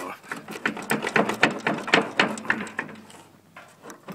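Rapid clicking and rattling of metal and plastic as a rusted-in wiring plug is worked back and forth on a Gravely 430's key switch, dying down about three seconds in.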